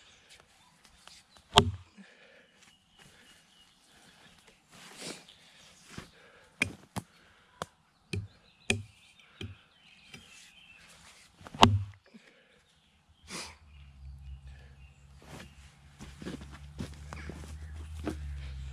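Two single axe strikes biting into a green log, about ten seconds apart: the Ochsenkopf Iltis 800 first, then the Council Tool axe, each a sharp chop with a dull thud. Smaller knocks and rustles lie between them, and a low rumble sets in near the end.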